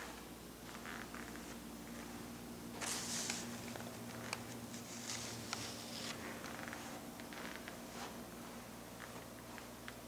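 Quiet room tone with a faint steady low hum, broken by soft rustles about three seconds in and again around five to six seconds, and a few light clicks, from a handheld camcorder being carried through the room.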